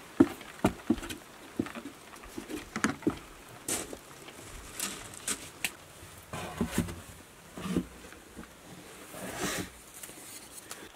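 Boots knocking and scuffing on wooden stairs while climbing down through a hatch into an underground cellar: irregular footfalls, one or two a second, with a few longer scrapes.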